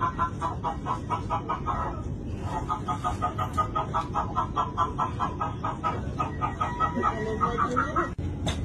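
A chicken clucking in quick, even pulses, about five a second, with a short break about two seconds in, over a steady low rumble.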